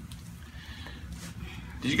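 Quiet room with a faint low hum in the pause just after a neck adjustment's crack. A voice begins right at the end.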